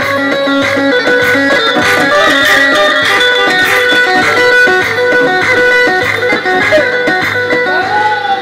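Loud amplified Turkish folk dance music (oyun havası) played live by a street band: a plucked-string lead melody over a steady low beat.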